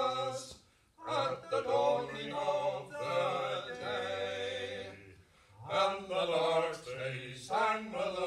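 Male folk trio singing unaccompanied in harmony, in long sung phrases with a short breath pause about a second in and another about five seconds in.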